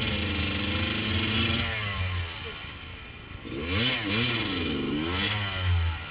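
Off-road motorcycle engine revved hard in two spells, its pitch rising and falling, dropping back to a lower run for a couple of seconds in between, as the bike is worked up a steep, rough slope.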